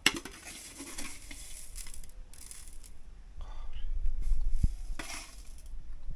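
Tableware being handled: a spoon and crockery clinking and scraping, with a sharp click at the start and the loudest, noisiest stretch about four to five seconds in.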